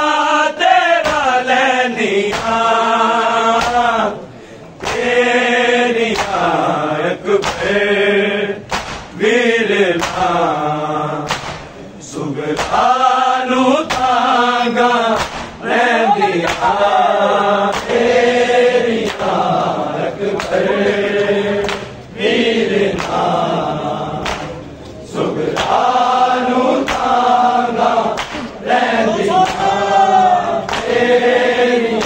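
Men's voices chanting a noha (mourning lament) together in long sung phrases with short breaks between them. Sharp hand slaps of matam, palms beating on bare chests, sound in a regular beat alongside the chant.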